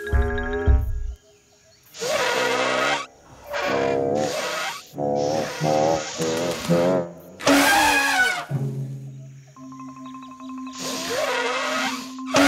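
Cartoon rooster's comic vocal sounds: a run of squawking, warbling calls that wobble in pitch, ending in a long falling call about eight seconds in. After that come light music with held notes and one more short call near the end.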